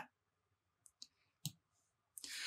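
Near silence with two faint, short clicks, about a second in and half a second later.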